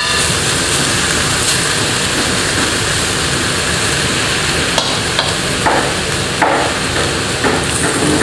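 King oyster mushroom, pork and pepper stir-fry sizzling steadily in a heated stainless steel dry pot, with a few sharper crackles in the second half.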